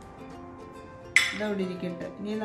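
A metal spoon clinks and scrapes against a ceramic dish while oil-and-herb dressing is stirred and spooned out, with one sharp clink a little over a second in. Background music plays throughout.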